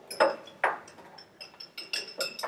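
A thin metal pick clinking against glass while fishing a maraschino cherry out of a jar: two light knocks, then a run of small taps with a faint high ringing.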